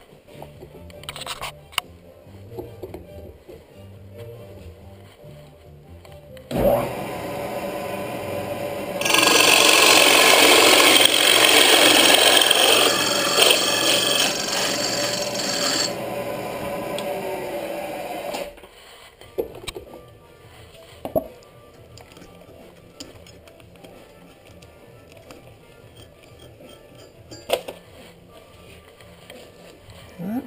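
Drill press with a 3-inch carbide-tipped Spyder hole saw: the motor starts about a quarter of the way in, and the saw cuts into a wooden board loudly for about seven seconds. It then runs on more quietly for a couple of seconds and stops abruptly, followed by a few knocks from handling the work.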